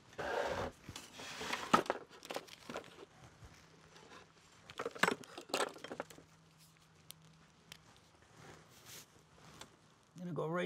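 Paper rustling and crinkling with scattered light clicks as hands handle craft materials and tools on a kraft-paper-covered worktable. The rustling is strongest in the first couple of seconds, and there are a few sharper clicks around five seconds in.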